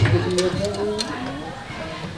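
A man's voice murmuring quietly, with a few sharp clicks in the first second, the loudest right at the start.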